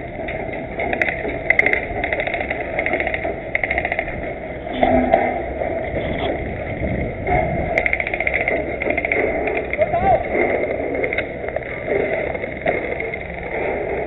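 Short bursts of rapid clicking, typical of airsoft guns firing on automatic, over a steady wind rumble on the camera's microphone. Distant voices call out now and then.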